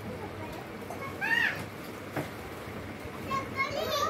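A caged pet parakeet calling: one shrill arching squawk about a second in, then a run of short chattering notes near the end.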